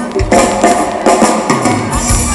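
Live pop band playing on stage, with a drum kit keeping a steady beat of about two strikes a second under bass and guitars.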